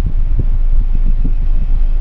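Low, steady rumble of a car's idling engine heard inside the cabin, with a couple of faint taps.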